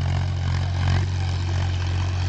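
A steady low engine hum that holds an even pitch throughout, with no change in speed.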